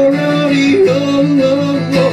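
A man singing with acoustic guitar accompaniment, holding two long notes in turn over strummed chords.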